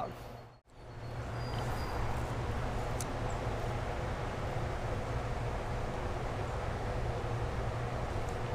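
Steady rushing of flowing creek water, with a brief drop to near silence just under a second in.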